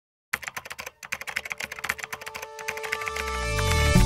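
Intro sound design: rapid clicks, about ten a second, over faint held tones, giving way near the end to a deep swell that grows louder into the opening music.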